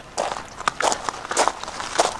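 Footsteps crunching on gravel, several steps in a row.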